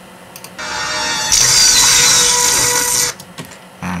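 Film soundtrack playing back from a video file on a computer: a dense sound of many steady tones starts about half a second in, a loud hissy rush joins it a little later, and both cut off suddenly about three seconds in, as playback is stopped.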